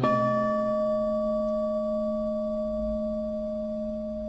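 A Buddhist bowl bell struck once, its clear ring lingering and slowly fading. A low steady hum sounds beneath it.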